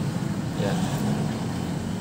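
A steady low engine rumble in the background, like a vehicle running, with no clear start or stop.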